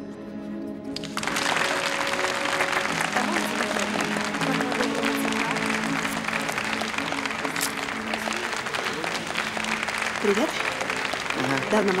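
Audience applauding loudly, breaking out suddenly about a second in over background music.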